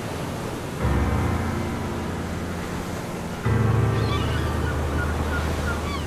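Ocean waves washing on a shore, a steady surf sound effect, under piano music. Two sustained low piano chords ring out, struck about a second in and again about halfway through.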